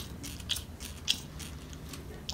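Ear irrigation to flush out compacted earwax: faint wet clicks and crackles as water is squirted into the ear canal and runs into a basin, with two short louder bursts about half a second and a second in.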